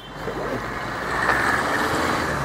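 Outdoor road traffic noise, a vehicle passing that grows louder about a second in.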